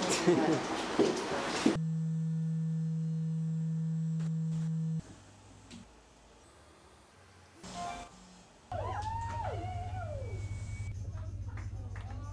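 Party chatter cuts off about two seconds in and gives way to a steady electronic hum for about three seconds. After a near-quiet gap, a low buzzing hum starts up with warbling, gliding whistle-like tones over it: the sound of an analog television's signal and tuning.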